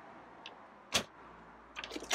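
A sharp click about a second in, then a few lighter clicks near the end, as a hand works the stainless flush latch of a fiberglass storage cabinet door.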